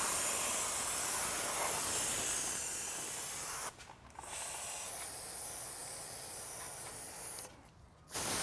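Aerosol brake cleaner hissing from a can's straw nozzle onto a drum brake assembly in two long bursts, with a short break about halfway through; the second burst is a little quieter.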